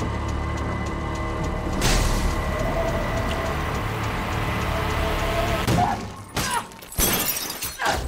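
Horror film trailer soundtrack: tense music over a steady low drone, with a sharp hit about two seconds in and a run of sharp, crashing hits with brief drops to quiet near the end.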